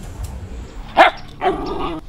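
A small dog barking twice: a short, sharp bark about a second in, then a longer, lower bark.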